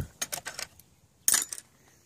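Hand tools clicking and clattering in a plastic toolbox as one is picked out: a few light clicks at first, then a sharper clatter just past the middle.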